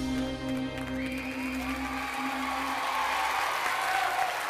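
A live band's final chord held and fading out at the end of a song, as studio audience applause starts up about a second in and grows.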